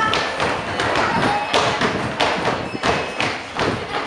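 Children's feet jumping and stamping on a studio floor: a quick, irregular run of thumps and taps.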